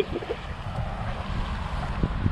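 Wind buffeting the camera microphone with a steady low rumble, over choppy bay water washing around the pier pilings.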